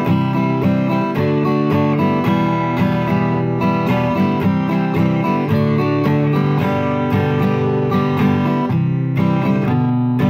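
Acoustic guitar strumming chords in a steady rhythm, changing chords every second or so, in the key of G.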